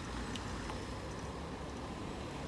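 Steady low rumble of street traffic with cars passing, with a couple of faint clicks.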